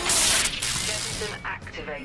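A loud hissing blast of noise from a TV drama sound effect, lasting about a second and a half and then dropping away. A thin steady high tone is left behind.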